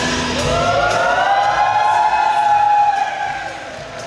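A long drawn-out vocal note over the stage music, rising and then falling in pitch for about three seconds. The music drops in level near the end.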